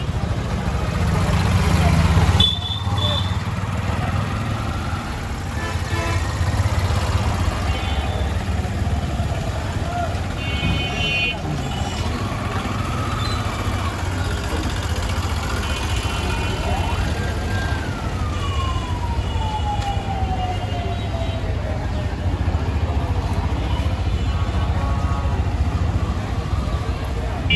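Busy street traffic: auto-rickshaw and motorbike engines running with short horn honks several times, under a hubbub of voices. About two-thirds of the way through, a tone rises quickly, then glides down over a few seconds.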